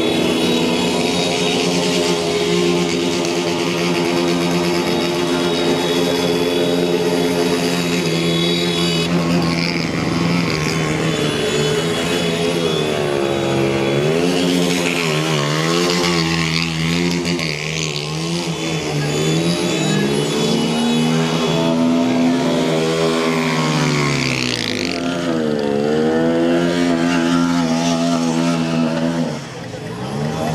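Motorcycle engines running as motorbikes ride past, held at a steady pitch at first. In the second half they rise and fall repeatedly in pitch as the riders rev.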